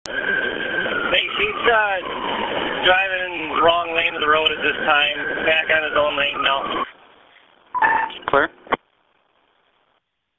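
Police radio traffic: a voice over a narrow-band radio channel, too garbled to make out, then a moment of hiss about seven seconds in and a short second transmission that cuts off abruptly.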